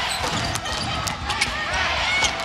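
Basketball being dribbled on an indoor hardwood court during live play, heard as a series of sharp knocks over the steady noise of the arena crowd.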